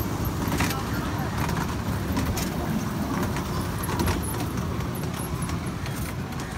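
Small amusement-park ride train running along its track, heard from aboard: a steady low rumble with the carriages rattling and clicking now and then.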